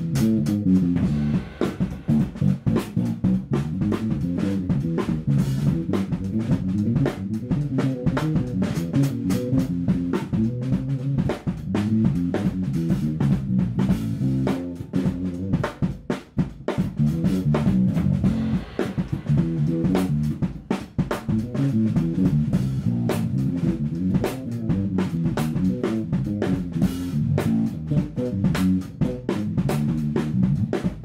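Instrumental funk-jazz played live by a quartet: two electric guitars, electric bass and a drum kit with snare, bass drum and cymbals, in a steady groove.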